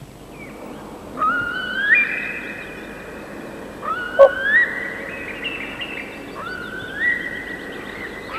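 A diver (loon) wailing over a lake: three long calls, each sliding up in pitch and then holding a high, steady note.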